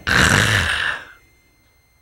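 A man's loud, breathy vocal burst into a close headset microphone, a huff of exhaled laughter about a second long that ends abruptly, followed by quiet.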